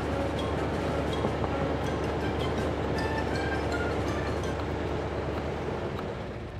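Heavy diesel engine idling steadily, a continuous low rumble with a steady hum.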